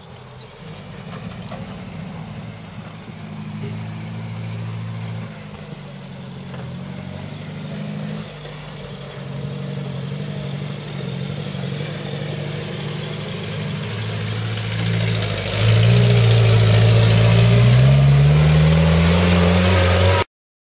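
Series 3 Land Rover engine running as the pickup climbs a grassy hill, its pitch rising and falling with the throttle. About fifteen seconds in it gets much louder, and near the end the pitch rises steadily as it revs.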